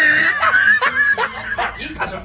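A person laughing, high-pitched and broken into short bursts.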